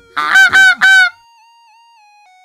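Domestic goose honking three times in quick succession, all within about a second, followed by faint background music with held notes.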